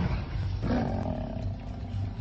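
A lion snarling as it fights off African buffalo: one harsh growl about half a second in, falling in pitch, over a low pulsing beat.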